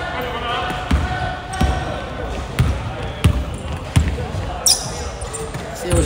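A basketball being dribbled on a hardwood gym floor, a short thump about every two-thirds of a second. Voices call out on the court, mostly in the first couple of seconds.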